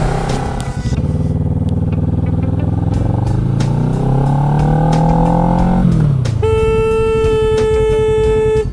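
Kawasaki ER-6n's 650 cc parallel-twin engine pulling under throttle, its pitch rising steadily. About six seconds in the pitch drops sharply as the throttle closes. A vehicle horn then sounds one steady held blast of about two seconds, warning off a car that is cutting in.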